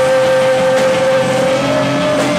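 Live rock band with a trumpet holding one long, loud note that steps up slightly in pitch near the end, over strummed acoustic-electric guitar.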